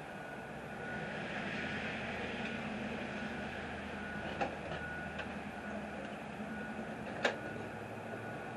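A steady rumble with a low hum that swells about a second in, with a few light clicks past the middle and one sharper click near the end.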